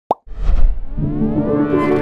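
Logo sting sound effect: a short rising plop, then a deep whoosh that swells into a held synthesized chord with upward-sweeping tones.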